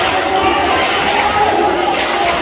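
A basketball being dribbled on a gym's hardwood court during a game, with voices carrying through the hall.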